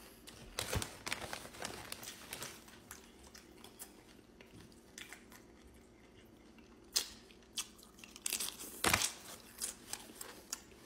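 Close-up chewing of a forkful of a rice, meat and salsa bowl, with scattered crunches and a few sharp clicks, the loudest near the end.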